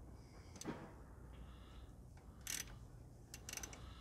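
Ratchet with a 14 mm hex bit clicking as it turns the drain plug back into the front differential: a few single clicks, then a quick run of clicks near the end.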